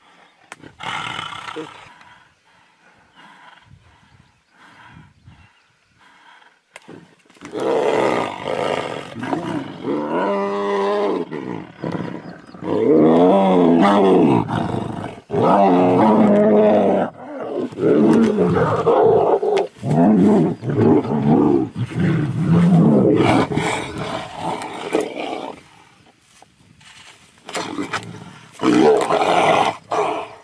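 Two tigers fighting, snarling and roaring. The calls are loudest and almost continuous from about eight seconds in to about twenty-five seconds, with a brief outburst about a second in and another near the end.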